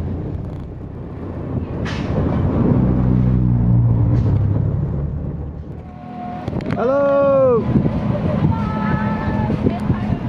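A motor vehicle's engine running with a low hum that swells a few seconds in and then eases. About seven seconds in, a one-second pitched call rises then falls over it.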